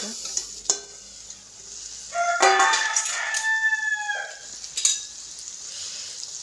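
A rooster crows once for about two seconds in the middle, the loudest sound here. Underneath is the quiet sizzle of food frying in a steel pan, with a couple of sharp metal clinks of a utensil against the pan.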